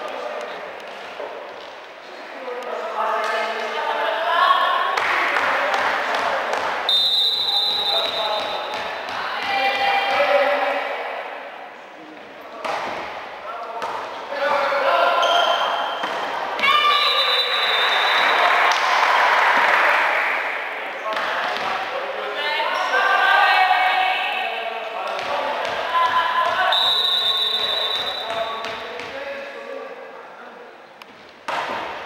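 Indoor volleyball play in a sports hall: women players and spectators shouting and cheering, with thuds of the ball being served, hit and bouncing on the court. A referee's whistle gives three short blasts, spaced about ten seconds apart.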